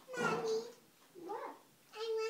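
A young child's high-pitched wordless calls: a louder, fairly level one at the start, then a shorter one about a second in that rises and falls in pitch.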